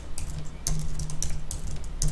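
Typing on a computer keyboard: a run of separate key clicks.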